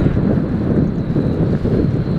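Wind buffeting the camera microphone: a steady, loud, fluttering low rumble.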